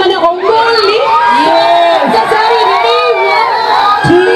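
A crowd cheering and shouting, many voices overlapping loudly.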